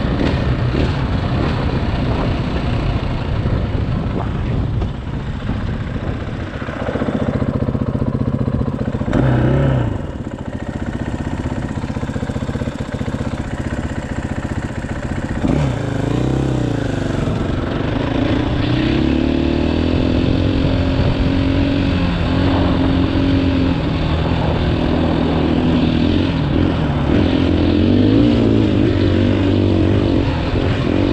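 2018 KTM 500 EXC-F's single-cylinder four-stroke engine running under way, revving up and down through the gears. The engine pitch dips and climbs again about nine seconds in and again near sixteen seconds, then the engine runs steadier.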